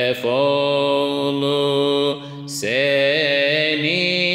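Unaccompanied male voice singing a Turkish Sufi hymn (ilahi) in makam hüzzam, drawing out long melismatic notes in two phrases with a short break about two seconds in. A steady low drone holds underneath.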